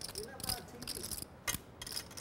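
Poker chips clicking together as they are handled at the table, a run of quick, irregular clicks.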